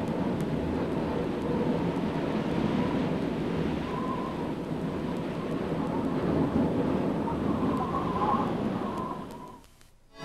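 Steady blizzard wind blowing, with a faint wavering whistle over it; it fades out near the end.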